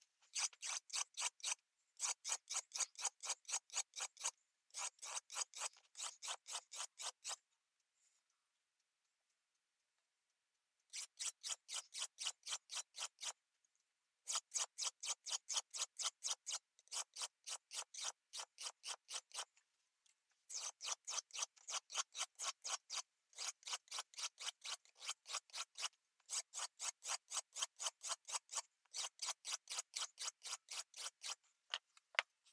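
Hand sanding of a mezzaluna's flat steel blade: sandpaper rubbed in quick back-and-forth scraping strokes, about four a second, in runs of a few seconds, with a pause of about three seconds about a quarter of the way in.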